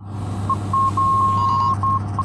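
Electronic beeping at one fixed, fairly high pitch: a short beep, two more short ones, then a long held tone of almost a second and a few short beeps near the end, over a steady low hum and hiss.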